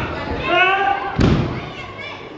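A voice yells, then a single heavy thud a little past the middle as wrestlers' bodies slam onto the wrestling ring's mat.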